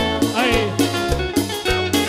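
Cumbia band music in an instrumental passage, with no singing: a lead line with bending notes over a steady bass and percussion beat.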